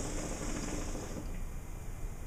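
Hookah being drawn on through its hose: air hissing and water in the base bubbling, stopping about a second in.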